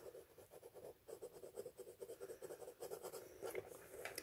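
Hard graphite pencil tracing over lines on tracing paper laid on a stretched canvas, with faint, quick scratching strokes.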